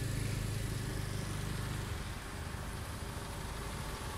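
A motor vehicle's engine idling close by, a steady low hum that eases somewhat about halfway through.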